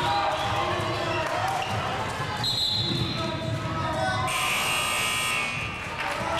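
Gym din of voices and a basketball bouncing on a hardwood floor, cut through by two high whistle blasts: a short one about two and a half seconds in and a longer one from about four seconds to near the end, a referee's whistle stopping play.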